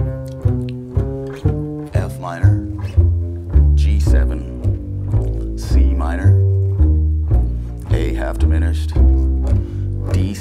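Upright double bass played pizzicato: a line of plucked low notes, about two a second, each struck sharply and ringing down. The line walks through the B-section changes of the tune, G7♭9 to C minor and C7♭9 to F minor, ending back on C minor.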